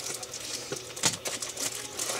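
A few light clicks and taps from small acrylic counters and cardboard pieces being handled.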